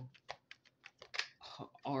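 A quick, irregular run of about ten light clicks and taps from a deck of cards being handled on a table, the loudest a little past the middle.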